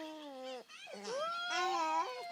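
A baby making long, drawn-out happy vocal sounds: one held call, then after a short break a second call that rises in pitch.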